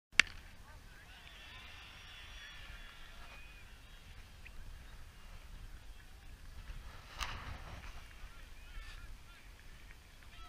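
A starting gun fires once about seven seconds in, a sharp crack with a short echo, sending off a cross-country race. It is preceded by a sharp click right at the start and by faint high wavering calls over low background noise from the open field.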